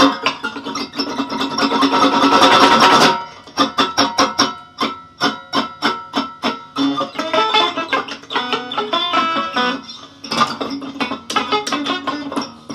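Gibson ES-175D archtop electric guitar played in free improvisation: a dense strummed flurry that stops abruptly about three seconds in, then separate picked notes and chords that grow busier, with strumming returning near the end.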